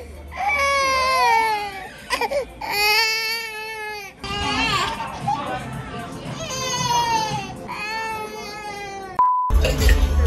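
A one-year-old toddler crying in a meltdown: loud, high, wavering wails in several long stretches with short breaths between.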